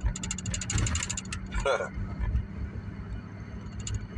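Steady engine and road drone inside a moving car's cabin, with a quick run of fine rattling clicks in the first second.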